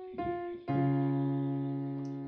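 Piano playing the melody and bass line together: a single melody note about a fifth of a second in, then at about two-thirds of a second a low bass note struck with a higher note, held and slowly fading.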